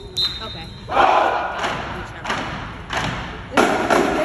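Marching band drumline opening with loud, evenly spaced hits about two-thirds of a second apart, each echoing in a large gym, with crowd noise underneath.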